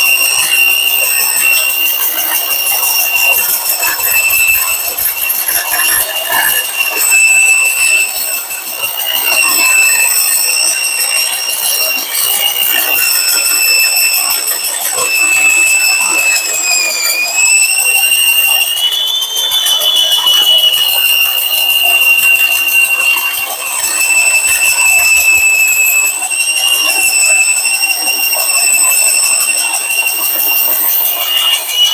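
A power tool's motor running with a steady high-pitched whine over a rough cutting noise, taking material off a part of a DeWalt DCS573 circular saw to bring it back in line. About halfway through the pitch sags and then recovers as it bears into the cut.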